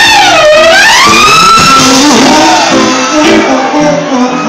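Live trumpet playing a loud, long note that sags in pitch, swoops back up and holds higher, over a jazz band. The trumpet note ends about two seconds in while the band carries on with lower notes.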